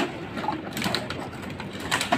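Empty plastic bottles clattering and crinkling as they are picked up by hand from a heap of plastic litter, a few short crackles.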